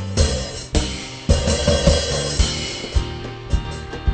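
Band music: a drum kit playing a beat of regular kick-drum thumps and cymbal hits under held chords.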